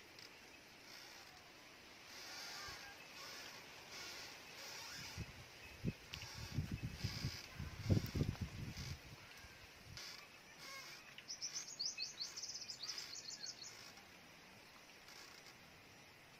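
Outdoor birdsong: high chirps repeating at an even pace, then a quick trill of chirps about eleven seconds in. Low thumps and rustling come in the middle.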